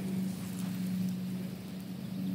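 Distant lawn mower engine running with a steady low hum, over a faint outdoor hiss.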